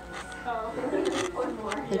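Indistinct voices talking in the background of a busy room; the soft spreading of frosting with a plastic spoon is not distinct.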